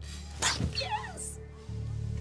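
A woman's tearful cry, high and wavering up and down for about half a second shortly after the start, over low sustained background music that shifts near the end.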